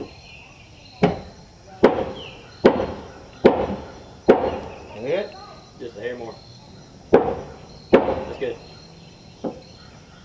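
A hammer striking wooden porch decking boards in a steady series of sharp blows, a little more than one a second, with a short pause midway.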